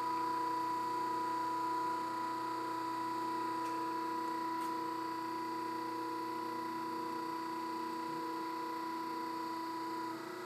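Electric hydraulic press power unit running: a one-horsepower single-phase motor driving an oil-submerged pump, giving a steady hum of a few fixed tones as the double-acting ram is worked through the two-way valve. It sounds "not too bad", only moderately noisy.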